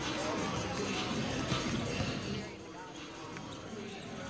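Basketballs bouncing on a gym's hardwood floor during warm-ups, under a background of voices in the gym. The sound drops a little quieter about two and a half seconds in.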